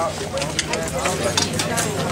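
Off-road motorcycle engines idling with a steady low hum, under people talking and a few sharp clicks.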